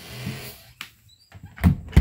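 Wooden RV bathroom door being slid shut: a short rushing slide, a click, then two loud low thuds as it closes against the frame.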